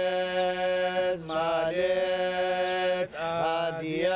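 Male Yazidi qewals chanting a sacred hymn (beyt) in long held notes over a steady lower held note; the voices break off briefly about a second in and again about three seconds in, gliding into each new note.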